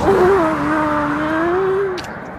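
A man's long, loud held shout on a single vowel, its pitch sagging a little and rising again before it breaks off after about two seconds.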